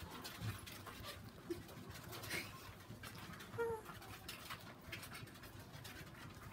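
Faint sniffing and snuffling from a pet hedgehog held against a sweatshirt, with small clicks and soft fabric rustling. There is a brief pitched sound about three and a half seconds in.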